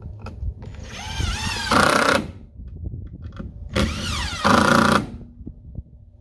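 Cordless drill run twice into a pressure-treated pine board, each run lasting a little over a second. The motor whine bends in pitch as it loads up, and each run gets louder just before it stops.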